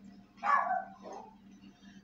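A dog barking: one short bark about half a second in, then a fainter one just after a second in.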